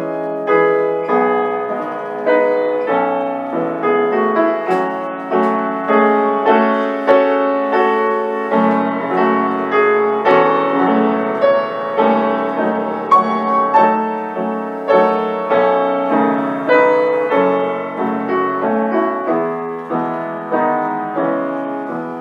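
Upright piano playing a lyrical instrumental passage alone, a melody over chords with each note struck and fading; this is the piano interlude of a song accompaniment, with the voice silent.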